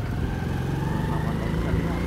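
A small vehicle engine running steadily, with a low rumble and a faint whine that rises slowly in pitch.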